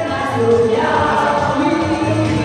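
A group of women singing a song together through microphones, holding long notes over amplified backing music.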